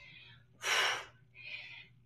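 A woman breathing hard through exertion during a set of barbell squats: a loud, breathy gasp about half a second in, then a fainter, shorter breath.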